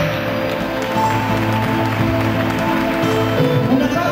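Instrumental ballroom dance music playing, with long held notes.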